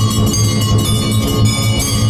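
Temple bells ringing continuously and rapidly with a steady low beat underneath, the ringing that accompanies the waving of the aarti lamp before the deity.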